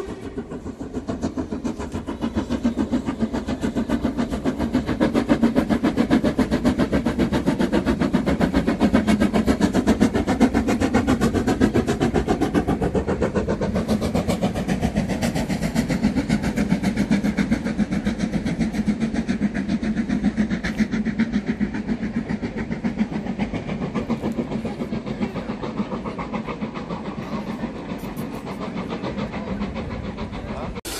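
Steam-hauled passenger train crossing a concrete viaduct just overhead: a steady rumble and rapid clatter of the carriages' wheels. It grows louder over the first several seconds, then slowly eases as the train passes.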